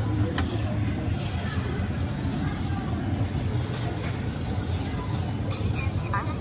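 Store ambience at a self-checkout: a steady low hum with indistinct background voices, a sharp click under half a second in and a few more clicks and knocks near the end as items are handled at the scanner and bagging area.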